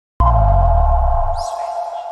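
Electronic TV-channel logo sting: a sudden deep bass hit under a steady two-note synth tone, with a short high rising sweep about a second and a half in as the bass drops away and the tone starts to fade.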